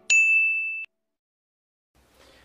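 A single high, bell-like ding sound effect on the intro logo, held for under a second and cut off suddenly.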